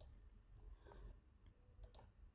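Near silence: room tone with a few faint clicks, the clearest near the end, from a computer mouse.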